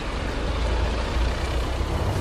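A break in a slowed, reverb-heavy pop track: the beat and vocals have dropped out, leaving a steady deep rumble under a hiss.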